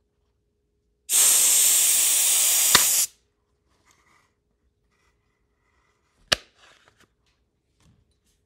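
Compressed-air blow gun on a portable air compressor's hose letting out a loud, steady hiss of air for about two seconds, then shutting off. A sharp knock follows a few seconds later.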